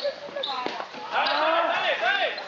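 A group of young people's voices shouting and calling out together, rising loud in the second half, with a few sharp thumps a little after half a second in.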